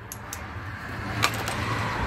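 A few light clicks and knocks of hand tools on the OM651 diesel's injectors and their clamps as the injectors are worked loose. Underneath them an even noise grows steadily louder.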